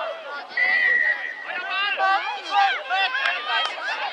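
A referee's whistle blast, one steady high note of under a second about half a second in, stopping play. Young players and onlookers shout and chatter around it.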